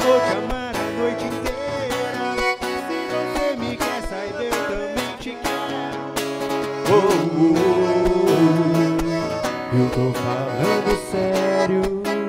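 Live band music: acoustic guitar and accordion playing a song, with a man singing into a microphone, the voice clearest in the second half.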